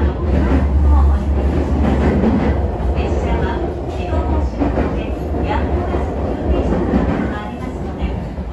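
Interior noise of a moving JR E129-series electric commuter train: a deep, steady rumble from the running gear and rails, easing off a little near the end.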